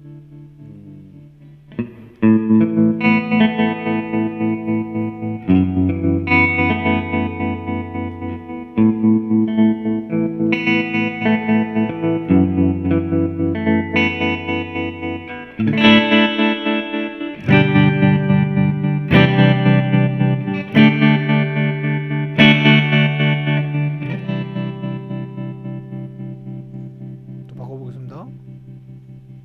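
Electric guitar, a Fender Stratocaster through a Fender '65 Twin Reverb with a JHS Kodiak tremolo pedal, playing a sequence of chords. The tremolo pulses the volume evenly several times a second. After a fading note, the chords come in about two seconds in, change every few seconds, and die away near the end.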